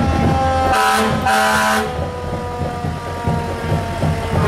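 Fire truck air horn sounding two short blasts about a second in, the second longer than the first, over the low rumble of passing trucks.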